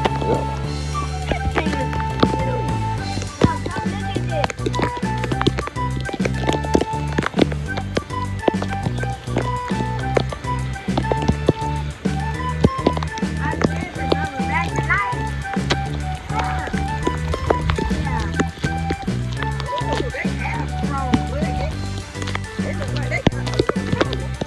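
Background music with a steady beat, a repeating bass line and a stepping melody.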